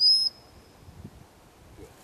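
One short blast on a gundog whistle: a high, steady note right at the start, trailing off within the first second, a whistle command to a working cocker spaniel.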